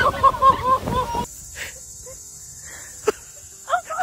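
A person's voice in short repeated cries over the rumble of a boat and its wake, cut off about a second in. It gives way to a steady high insect buzz, with one sharp knock about three seconds in.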